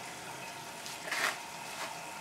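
Continuous stripping still running, with wash being pumped in: a steady watery hiss of moving and boiling liquid, with a short louder rush about a second in.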